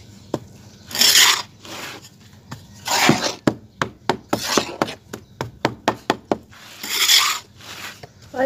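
Small hand trowel digging and scraping into a heap of dry, lumpy red soil, in several rasping scrapes with short sharp clicks between them as it knocks against clods and grit.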